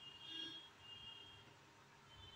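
Near silence: room tone with faint, brief high-pitched tones.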